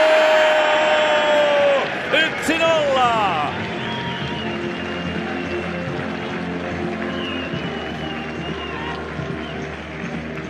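A commentator's long held goal shout, the loudest sound here, falling away after about two seconds and followed by more excited shouting. After that, music plays with crowd noise under it.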